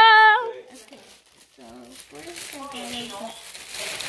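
A drawn-out voice ends about half a second in, followed by quieter talking, over faint crackling from hands pressing and pulling sticky slime on a plastic sheet.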